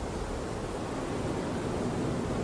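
Steady, even rushing noise with no pitch, a background ambience bed much like wind.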